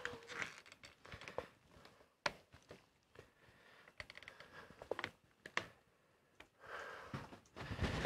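Scattered sharp clicks and light knocks of a camera and its clamp-on mounting arm being handled and repositioned, with a clicking flurry about halfway through and rustling handling noise building near the end.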